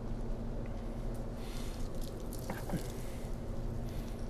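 A brief splash and swish of liquid dye about a second and a half in as a pussy willow branch is dipped into a tray of yellow dye and handled, with a few faint ticks after it, over a steady low hum.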